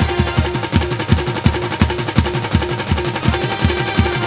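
Live Gujarati wedding-song (lagna geet) music: fast, steady drum beats, about four or five a second, under a short melodic figure that repeats.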